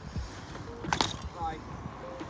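A dirt jump bike rolling past on a tarmac road: a low steady rumble with one sharp click about a second in, followed by a brief snatch of voice.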